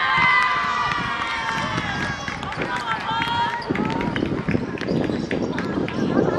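Several women's high-pitched shouts and cheers overlapping as a team celebrates a goal, loudest in the first couple of seconds and breaking into shorter calls. Players' running footsteps and chatter come in more strongly in the second half.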